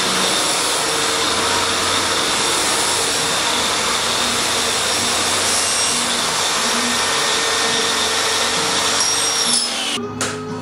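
Track saw running steadily as it cuts through the curved end of a foam roof panel. Its motor whine drops away just before the end as the saw winds down.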